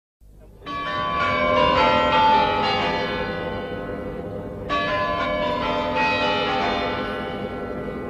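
The Kremlin chimes on the Spasskaya Tower ringing a phrase of bell notes that step down in pitch, each note ringing on into the next. A second phrase begins about halfway through.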